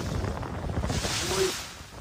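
Wind buffeting the microphone aboard an IMOCA racing yacht sailing at sea, a steady rumble with a louder hissing gust about a second in.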